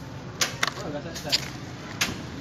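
Sharp plastic clicks and clacks, about five in quick irregular succession, from a two-player push-button battle toy as its buttons are pressed and the figures' plastic arms snap.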